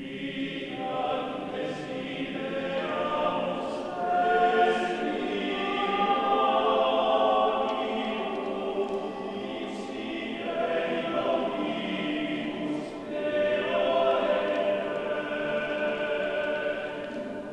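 All-male a cappella vocal ensemble in a low-to-middle register singing a phrase of a late-16th-century polyphonic Passion setting. Several voices hold chords together, with short breaks between phrases, in a reverberant cathedral acoustic.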